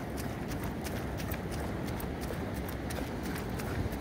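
A runner's footsteps on wet, firm beach sand: an even beat of steps, several a second, over a low steady rumble.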